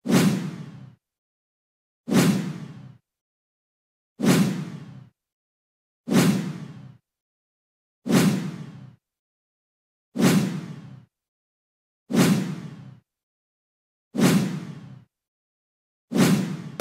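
A series of eight identical whoosh transition sound effects, one about every two seconds, each starting sharply and dying away within a second.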